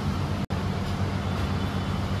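Steady low hum of refrigerated display cabinets and air conditioning, broken by a momentary dropout about half a second in.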